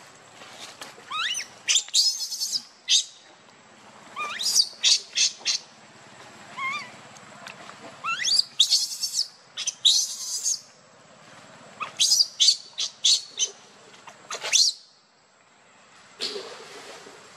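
An infant macaque crying in four bouts, each a rising squeal that breaks into shrill, harsh screeches, typical of a hungry baby begging to nurse.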